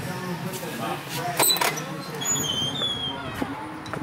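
Indistinct voices over steady background noise, with a few sharp clicks.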